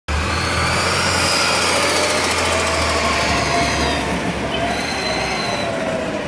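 Compressed-natural-gas garbage truck running as it pulls up and slows to a stop, its engine giving a steady low hum. A high, slowly wavering squeal rides over it, fading and then returning near the end as the truck stops: brake squeal.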